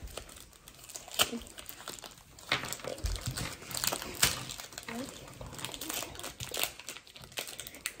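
Plastic foil wrapper of a Pokémon trading card booster pack crinkling in the hands, with irregular sharp crackles as it is worked open and cards are handled.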